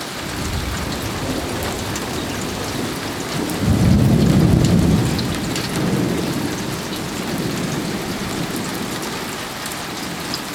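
Thunder rolling over steady rain: a deep rumble builds soon after the start, is loudest for about a second and a half around the middle, then dies away slowly while the rain keeps falling.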